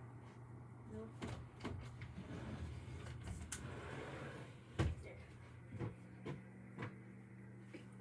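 Scattered knocks and bumps of furniture and household objects being handled and shifted, the loudest about five seconds in and several smaller ones soon after, over a steady low hum.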